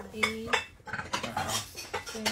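Ceramic plates clinking as they are lifted one by one off a stack and counted: a run of short, light clacks of plate on plate.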